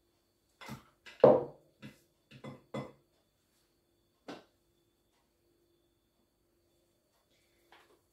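A spatula scraping and knocking against a bowl as egg yolks are cleared out of it, giving a run of short knocks in the first three seconds (the loudest a little over a second in) and one more knock about four seconds in.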